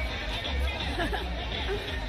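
Indistinct chatter of several people's voices, with faint music in the background and a steady low rumble.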